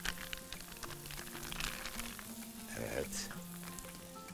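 A pan of orzo toasting in butter and olive oil, sizzling quietly, with a few light handling clicks and soft background music.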